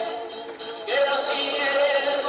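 Unaccompanied voice singing a slow melody in long held notes with a slight waver. The sound dips about half a second in, and a new held note begins just under a second in.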